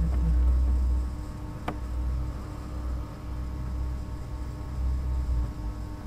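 Steady low hum of microphone and room background noise, with one sharp click about two seconds in.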